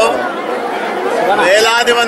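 Speech: a man talking, with chatter from the people around him.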